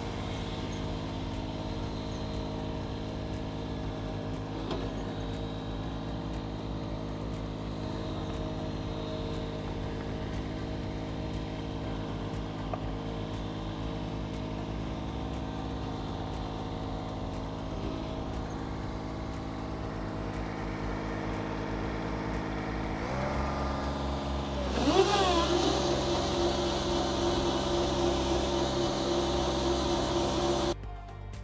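Engine of a Toro TriFlex ride-on triplex reel mower running steadily, heard from the operator's seat. About 23 seconds in it revs up, and from about 25 seconds it runs louder at a higher pitch.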